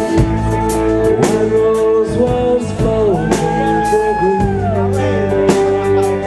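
Live rock band playing with a male lead singer: sung notes held and bent over sustained guitar chords and regular drum hits, with one long held note in the second half.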